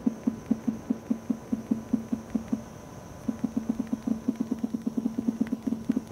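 Realme X7 Max smartphone's vibration motor buzzing in short pulses, one with each keypress on the on-screen keyboard, with haptic feedback at its highest intensity. A rapid run of about five to seven buzzes a second, a pause of under a second near the middle, then another run.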